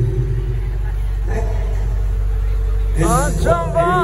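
A steady low hum under indistinct voices. About three seconds in, a singer starts a wavering, sliding vocal line over the PA sound system, the opening of a jaranan song.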